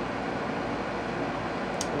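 Steady background hiss like a fan or air conditioning, even and unchanging, with a faint click near the end.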